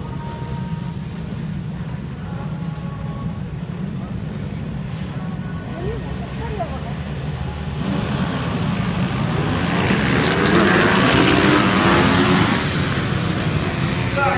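A grid of supermoto racing motorcycles running on the start line, then launching together about eight seconds in: many engines revving hard at once, loudest around ten to twelve seconds as the pack pulls away.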